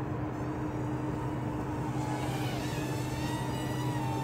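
Hubsan X4 H107D+ micro quadcopter hovering, its four small brushed motors whining steadily, the higher tones wavering slightly as the throttle shifts.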